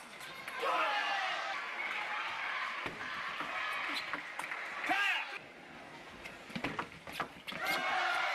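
Table tennis rally: a plastic ball struck by paddles and bouncing on the table, heard as sharp single clicks, with a cluster of them near the end. Voices call out between the hits, one briefly about five seconds in.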